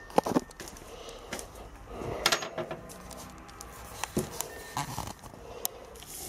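Handling noises from a short, freshly bent steel bar being carried and laid down: a few sharp clicks and light metallic knocks, the clearest near the start, a little past two seconds and around four seconds in.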